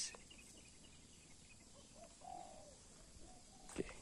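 Quiet outdoor background with one faint, short bird call about two seconds in.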